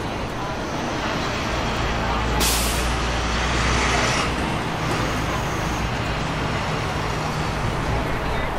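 Street traffic with a heavy vehicle's engine rumbling low; its air brakes let out a short, sharp hiss about two and a half seconds in.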